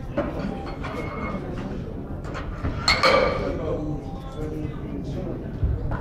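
Steel barbell plates clinking and clanking as loaders change the weight on a competition bench press bar, with one louder clank about halfway through, over the murmur of voices in a large hall.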